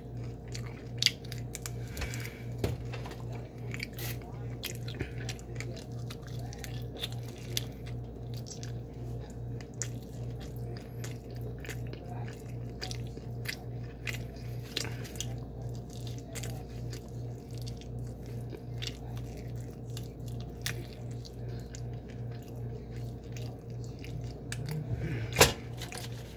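A person biting and chewing crispy fried chicken close to the microphone: a steady run of small crunches and wet mouth clicks, with one sharper crunch near the end.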